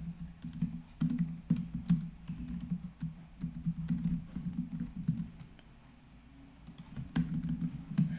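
Typing on a computer keyboard: quick runs of keystrokes, pausing for about a second near six seconds in, then resuming.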